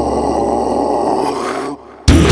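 Death-metal recording at the end of a song: a long, low, harsh held sound with no drums, which cuts off abruptly near the end.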